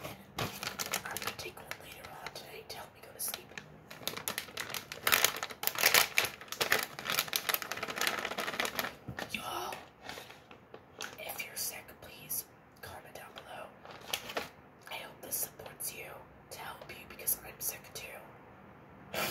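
Close handling noises: rapid clicks and crinkles of a plastic package being handled, mixed with soft whispered speech.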